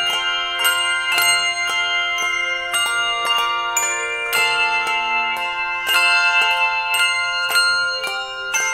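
Handbell choir playing a piece: several bells struck together about every half second, each chord ringing on into the next.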